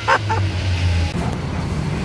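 Steady road noise while cycling along a city street: a low rumble of passing traffic mixed with wind on the microphone, with no clear single event standing out.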